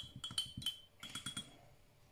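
Paintbrush being rinsed in a glass water cup, knocking against the glass in a quick series of ringing clinks that die away after about a second and a half.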